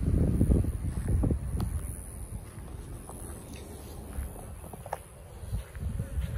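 Wind buffeting the microphone in low rumbling gusts, heaviest in the first couple of seconds and then dying down, with a few light knocks from the camera being handled.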